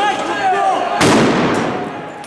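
A single loud bang from a police riot-control munition about a second in, with a short echoing tail off the street's buildings. Crowd voices come just before it.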